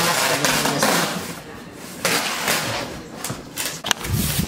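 Packing tape being pulled off its roll and pressed onto a cardboard box to seal it, two long pulls with a short pause between. A sharp knock near the end.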